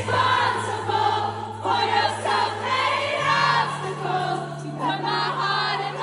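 A live pop song over the concert PA, with a female lead vocal over a held low keyboard or bass note that shifts pitch about halfway through, and the crowd singing along.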